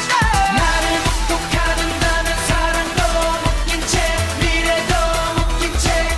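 A K-pop boy group singing live in Korean over an electronic dance-pop backing track with a steady beat.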